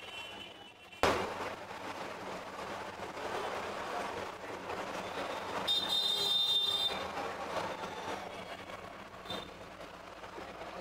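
Busy street traffic noise that sets in abruptly about a second in, with a high squeal, like a horn or brakes, about six seconds in.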